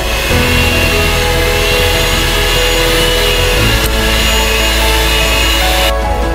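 Electric hand mixer running steadily, its beaters churning margarine and powdered sugar in a glass bowl, under background music.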